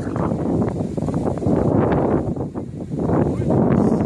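Wind buffeting the microphone in a loud, uneven rumble.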